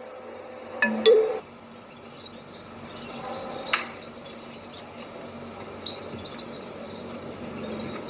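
Outdoor birdsong: birds chirping, with a few sharp rising calls in the second half, over a steady high insect drone.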